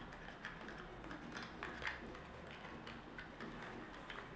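Faint clicks and taps of hands handling small spark plug boxes and a metal spark plug, with a couple of slightly louder clicks in the middle.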